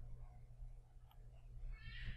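Faint steady low hum of the recording with a faint click about a second in. Near the end, a faint high-pitched wavering squeal begins.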